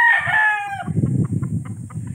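Rooster crowing, the crow trailing off a little under a second in, followed by a low rumbling noise.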